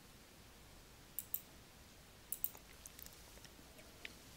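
Faint computer mouse clicks over quiet room tone: a pair of clicks just after a second in, another pair about two and a half seconds in, then a couple of lighter ticks.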